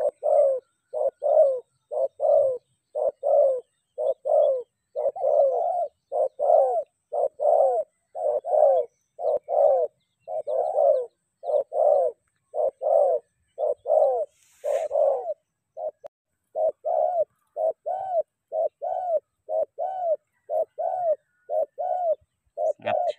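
Spotted dove cooing: a long, even series of short, soft coos, about two a second, each note rising and falling slightly in pitch.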